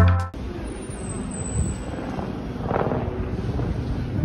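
Background music cuts off just after the start, leaving outdoor ambience: a steady low rumble with wind noise on the microphone.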